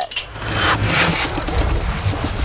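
Rushing, rumbling whoosh sound effect marking a scene change, building up after about half a second.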